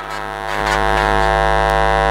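A steady held musical tone with many overtones, unwavering in pitch, that grows a little louder about half a second in.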